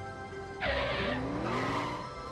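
Sound effect of vehicles braking to a halt with a tyre screech. It starts about half a second in and lasts about a second and a half, over steady background music.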